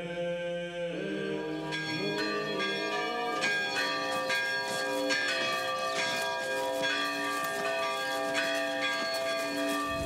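Several church bells being struck again and again, their ringing overlapping into a continuous peal that starts about two seconds in.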